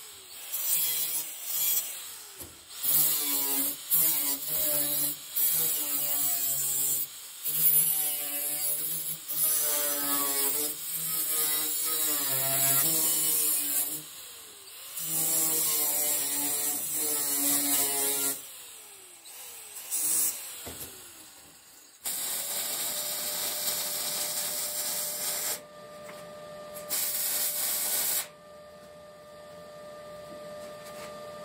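Makita angle grinder with a cutting disc cutting steel plate: the motor's whine dips and recovers as the disc bites, with short pauses where it winds down in pitch. In the last third a steadier hum with a constant tone takes over.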